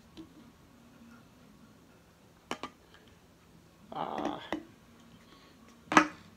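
Quiet room with a beer can and glass being handled: two light clicks about two and a half seconds in, a short breathy rush about four seconds in, and a sharp knock at the end.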